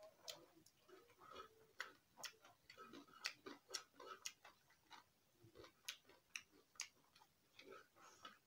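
Faint close-up eating sounds: irregular wet clicks and smacks of chewing, about two a second, with soft sounds of fingers working rice on a metal plate.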